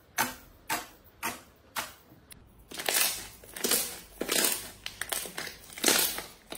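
Fingertips poking a sheet of glittery slime, each poke a sharp pop, about two a second. About halfway through, the hands press and gather the slime and the pops give way to longer, louder crackling squelches.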